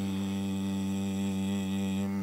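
A man's voice in chanted Quranic recitation holds one long, steady note: the drawn-out final syllable of "bismillah ar-rahman ar-rahim".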